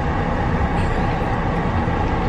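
Steady low rumble of a running car, heard from inside its cabin.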